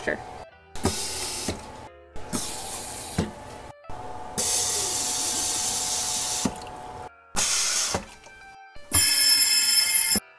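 Glass rinser spraying water up into a bottle and a tumbler pressed onto it, in about five separate bursts of hiss that start and stop sharply, with water running off into a stainless-steel sink.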